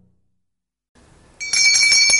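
A small hand bell being rung, starting about one and a half seconds in with a loud, clear, high ringing tone that carries on steadily.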